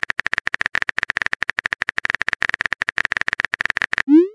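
Rapid typing sound effect of a phone texting app: short, even keyboard-tap clicks, about fifteen a second, as a message is typed out.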